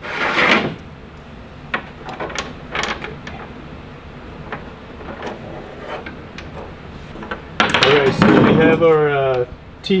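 Hardware sliding along a Toyota Tacoma's bed-side rail track. A scraping slide comes at the start, then a few light clicks and taps, and a louder stretch of handling noise near the end.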